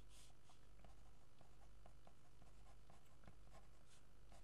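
Felt-tip pen writing on paper: faint short scratching strokes, a little stronger at the start.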